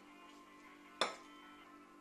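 Soft background music with steady sustained tones, and about a second in a single sharp clink of a ceramic plate set down on a wooden counter.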